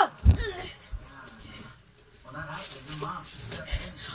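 Thuds of a child's body landing on a bed: one heavy thud just after the start and a lighter one about a second in, with another thud near the end.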